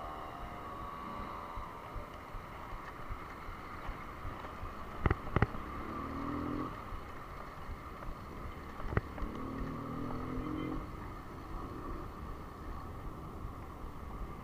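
Steady wind and road noise while riding a road bicycle through town traffic, with a few sharp clicks about five and nine seconds in and two brief low hums around six and ten seconds.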